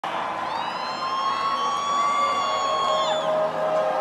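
Electronic synth tones, several held at once and drifting slightly upward, then sliding down in pitch together about three seconds in, over festival crowd noise.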